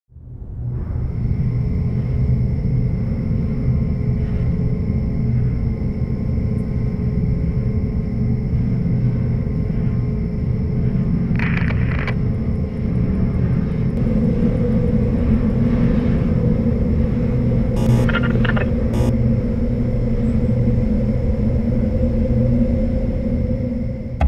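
A steady low rumble that fades in over the first second and then holds, with faint steady high tones above it. Short, sharper noises break in about halfway through and twice more near three-quarters of the way.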